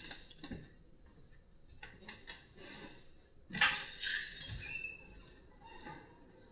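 A door being opened: a sharp knock about three and a half seconds in, then the hinge squeaking in a run of short high squeaks that step down in pitch over about a second.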